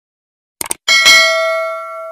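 Subscribe-button sound effect: a quick couple of mouse clicks, then a bright bell ding that rings out and fades, the notification bell of the animation.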